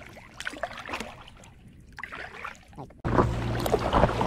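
Paddle dipping and dripping water on a calm river, soft splashes from a paddleboard. About three seconds in, the sound jumps to a louder steady low hum.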